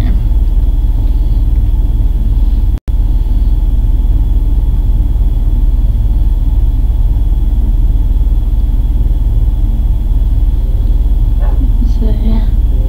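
Steady, loud low rumble with a faint, thin high whine above it. It cuts out for an instant about three seconds in.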